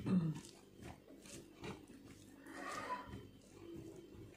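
Quiet eating sounds: fingers mixing rice on a steel plate and chewing, with a few faint clicks and a short murmur from the eater about three seconds in.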